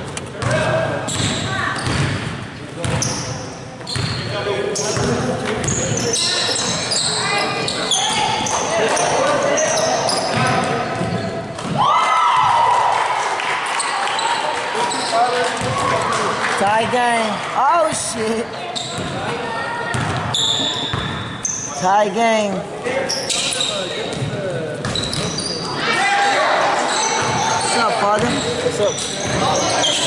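Basketball game on a hardwood gym floor: the ball bouncing as it is dribbled, sneakers squeaking in quick short squeals, and players' indistinct shouts, all in the reverberant space of a large gym.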